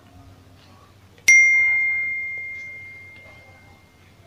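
A single bell-ding sound effect: one sharp strike about a second in, then one clear high ringing tone that fades away over nearly three seconds.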